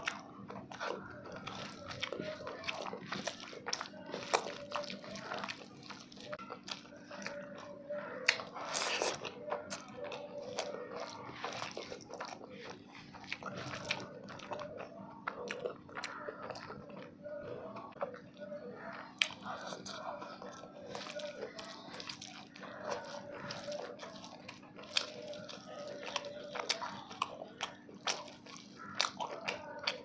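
Close-miked chewing and biting of a person eating rice and fried food by hand, with many short crunches and mouth clicks throughout over a steady low hum.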